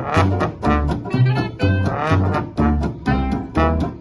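Small acoustic jazz band playing swing: trombone and clarinet over a plucked double bass walking about two notes a second, with guitar rhythm.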